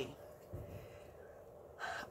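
Quiet room tone, then a person's quick intake of breath near the end.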